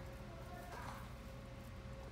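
Faint guinea pigs shuffling through wood shavings and nibbling hay, heard as light scattered ticks and rustles over a steady low hum with a thin steady tone, and one brief faint sound a little under a second in.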